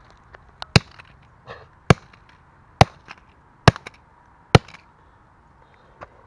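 Sledgehammer smashing a circuit board on pavement: five hard, sharp blows about a second apart, the last a little past the middle, with small clicks of debris in between.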